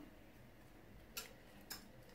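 Near silence broken by two faint, light clicks about half a second apart, a little over a second in: a metal wire whisk tapping a small plate to knock crumbled cheese into a bowl.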